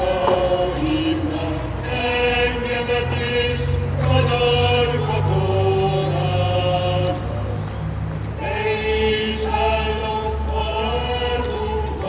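A choir singing slowly in long held notes, the chords changing every second or two, over a steady low rumble.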